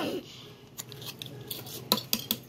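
Back of an axe head striking a metal bottle cap flat on a wooden stump: a few sharp metallic taps, the loudest near the end.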